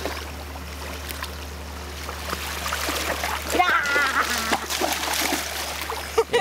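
Shallow seawater lapping and trickling over a sandy shore, with louder splashing about halfway through.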